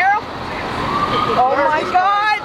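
A distant emergency siren, one thin tone slowly rising in pitch, under steady city street noise. An excited, high-pitched voice cries out at the start and again near the end, the loudest sounds.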